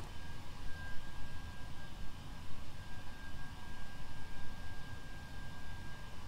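Room tone: a steady low rumble with a faint, steady high-pitched whine.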